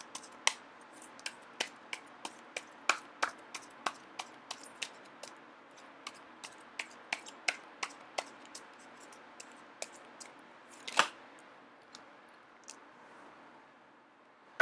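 A deck of tarot cards being shuffled by hand, the cards slapping and clicking against each other in short, uneven snaps, about two or three a second, with one louder snap about eleven seconds in. The snaps thin out and stop near the end.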